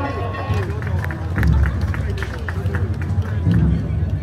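Crowd of festival-goers talking over one another, with scattered short clicks and a couple of low thumps.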